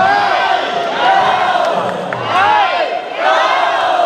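A crowd of people shouting cheers together, many voices at once, rising in several surges.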